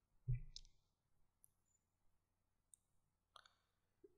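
Near silence with a few faint clicks: a computer mouse being clicked. The loudest click comes about a third of a second in, and the others are fainter ticks later on.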